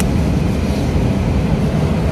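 Steady, even drone of airliner cabin noise, strongest in the low range, with no breaks.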